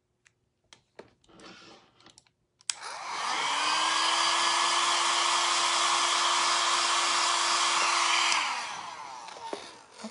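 A few handling clicks, then a small hair dryer switched on about three seconds in, its motor whining up to speed and blowing steadily for about five seconds before winding down near the end. It is drying freshly applied eyeliner so it won't smear.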